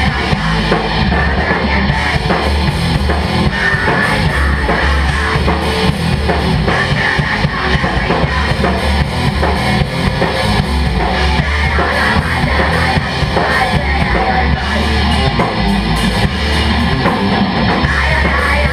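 Live crust punk band playing loud and without a break: distorted electric guitar and bass over a drum kit with a driving bass drum.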